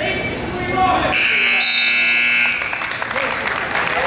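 Gym scoreboard buzzer sounding one steady blast of about a second and a half, starting about a second in, marking the end of a wrestling period as the wrestlers break apart. Spectators' voices are heard around it.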